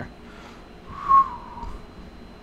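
A person whistling one short note about a second in, which dips slightly in pitch as it ends.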